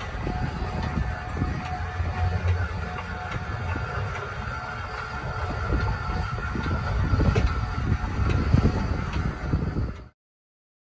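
A PSx1 12-volt electric stabilizer jack's motor running as the jack leg extends down to the ground: a steady whine over a low rumble, with the whine fading about six seconds in.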